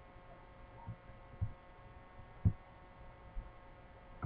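A faint steady electrical hum with four soft, dull low thumps spread through it, the third the loudest.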